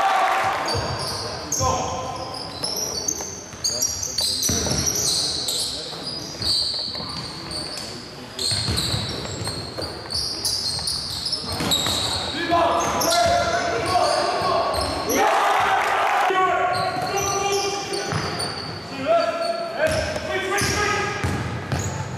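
Sound of an indoor basketball game: the ball bouncing on the court and shoes squeaking in many short, high squeaks, under the shouts of players and spectators, echoing in a large sports hall.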